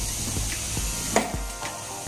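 Plastic handling noise as the vacuum cleaner's motor head is lifted off its drum, with a single sharp plastic click or knock a little over a second in.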